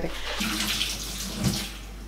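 Water running from a kitchen tap into the sink, stopping about one and a half seconds in, with a low knock just before it stops.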